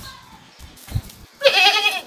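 A farm animal bleating once about a second and a half in: a short, loud, wavering call.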